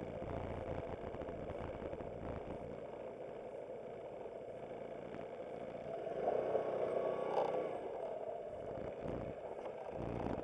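Aprilia SportCity scooter's engine running at low speed, getting louder for a couple of seconds about six seconds in as the scooter moves off.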